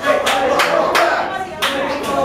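Audience clapping and calling out, with electric guitar notes ringing underneath.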